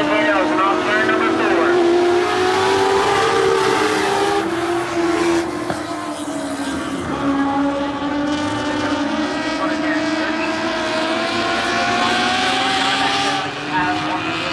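Several small race car engines running hard around a dirt oval, their pitch rising and falling as they go through the turns and down the straights.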